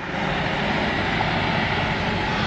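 Steady city street traffic noise, a continuous hiss and rumble with no distinct events.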